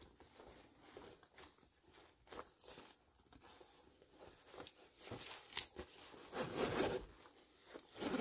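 Faint rustling and light knocks as items are shifted inside a vegan-leather clutch, then its metal zipper being pulled closed in the second half, with a sharp click a little after five seconds in.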